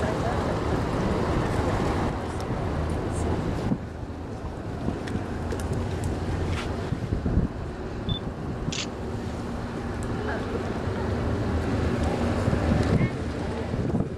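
Wind buffeting the microphone in an uneven low rumble, easing off about four seconds in. A faint steady hum runs underneath in the second half.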